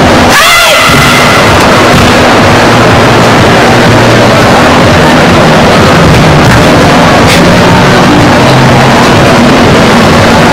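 Overloaded, distorted din of a crowded exhibition hall, steady and loud throughout. About half a second in, a sharp short shout with a quickly rising pitch stands out: a karate kiai from the performers.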